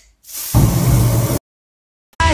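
Aerosol spray lit by a lighter into a burst of flame: a hiss that swells after about half a second into a loud whoosh of fire, lasting about a second, then cuts off suddenly.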